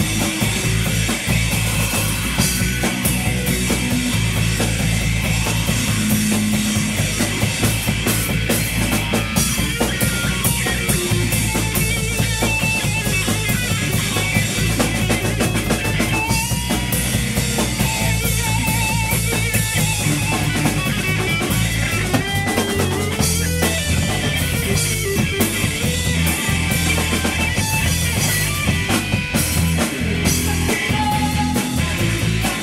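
A rock band playing live in a rehearsal room, with drum kit, electric guitar and electric bass through amplifiers. It is a loud, steady instrumental passage with no vocals.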